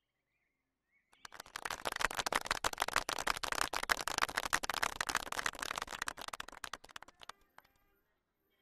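A crowd applauding: many hands clapping together, starting about a second in and dying away about seven seconds in.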